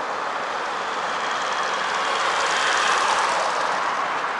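Tyres rolling on asphalt: a steady hiss of road noise that swells to a peak about three seconds in and eases off near the end.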